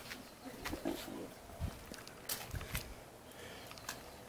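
Quiet outdoor ambience with a handful of light clicks and taps scattered through it.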